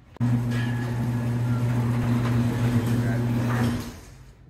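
Electric golf cart's reverse warning buzzer giving one steady, low, unchanging buzz for about three and a half seconds as the cart backs up, starting suddenly just after the start and cutting off sharply near the end.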